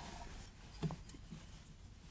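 Faint scraping and a few light clicks from a 7/16-inch drill bit turned by hand with locking pliers, reaming a head-stud hole through a cast iron Atomic 4 cylinder head down to its stop ring.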